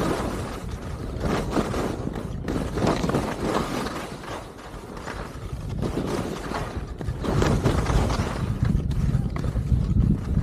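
Skis sliding and scraping over groomed snow, the hiss swelling and fading with each turn, over wind rumbling on the camera microphone.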